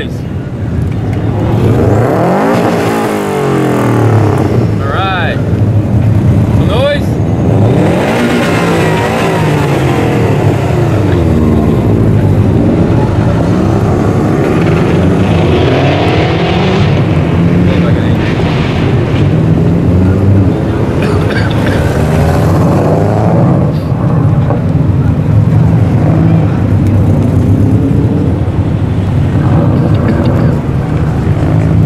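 Subaru Impreza flat-four boxer engines passing one after another at low speed, revving up and down through their exhausts.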